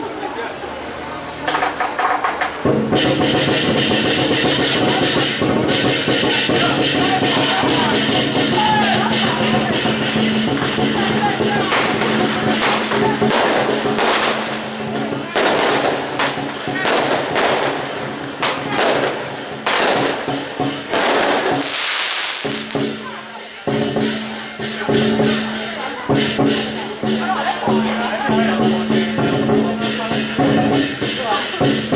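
Strings of firecrackers crackling in dense volleys, set off as a procession sedan chair arrives to pay respects at a temple, over music with steady held tones. The firecrackers stop about 22 seconds in, and the music carries on with percussion.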